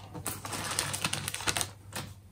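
Plastic poly mailer crinkling and rustling as it is handled and laid flat on a desk, with several sharp crackles.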